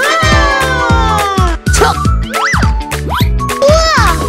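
Children's background music with a steady beat, laid over with cartoon sliding-whistle sound effects: a long falling slide at the start, then quick up-and-down glides about halfway through and again near the end.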